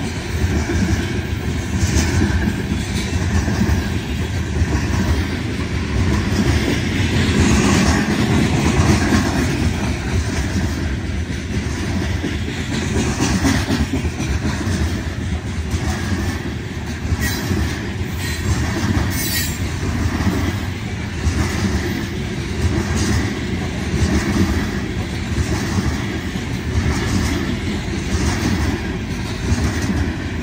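Loaded coal gondolas of a freight train rolling past at a grade crossing: a steady heavy rumble with a rhythmic clatter of wheels over the rail joints. A couple of brief high wheel squeals come a little past halfway.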